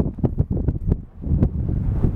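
Wind buffeting the microphone, a loud low rumble throughout, with scattered irregular light clicks over it.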